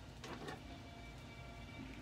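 Quiet room with a faint steady low hum and soft rustles of fingers parting damp hair.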